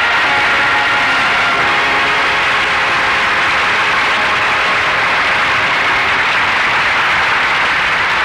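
Studio audience applauding steadily, with music fading out beneath it in the first few seconds.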